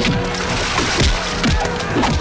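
Film fight sound effects: several hits in quick succession with wood cracking and splintering, over background music.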